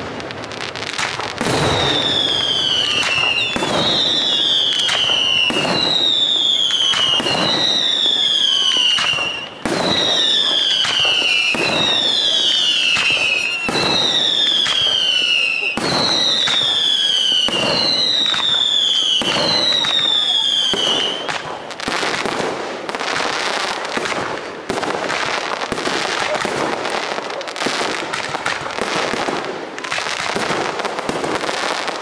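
Aerial fireworks display: a dozen or so whistling shells, about one every second and a half, each giving a falling whistle amid the bangs of bursting shells. Just past the two-thirds mark the whistles stop and a dense run of bangs and crackling carries on.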